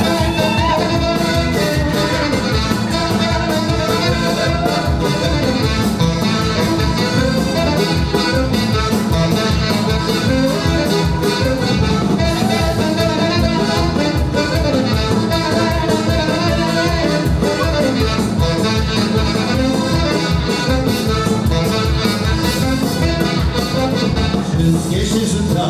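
Live dance band playing a fast instrumental passage with a steady quick beat and a melody over it, keyboard and bass guitar among the instruments.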